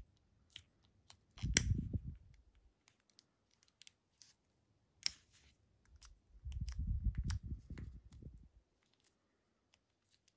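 A pocket lighter is struck and its flame burns briefly twice, about a second near the start and about two seconds past the middle, heating heat-shrink tubing. Light clicks of handling in between.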